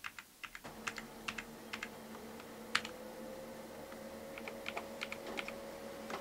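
Typing on a computer keyboard: irregular key clicks, with a steady hum coming in about half a second in.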